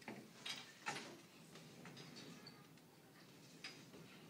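Quiet room tone with a few faint, short clicks: two close together near the start and one near the end.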